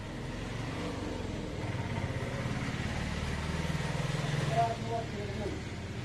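An engine running steadily, slowly getting louder, with brief voices near the end.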